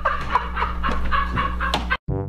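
A person laughing hard and high-pitched, in quick repeated breaths.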